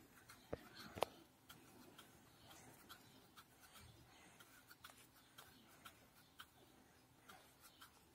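Near silence with faint, scattered taps and light scratching from a sponge-tipped water brush dabbing and rubbing on the page of a water-reveal colouring book. Two slightly louder taps come about half a second and a second in.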